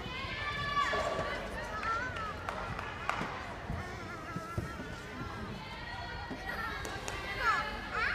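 Indistinct background voices and chatter in a large gymnasium, with faint music underneath and a few scattered dull thuds.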